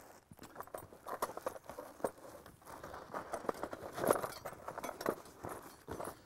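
Soft, irregular clicks and clinks of a steel coyote trap's chain and stakes being handled, with a few light knocks bunched near the middle.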